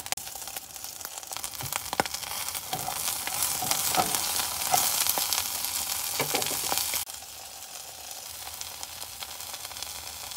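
Dried anchovies (dilis) frying in a pot: a steady sizzle with a few sharp clicks. The sizzle drops suddenly to a quieter level about seven seconds in.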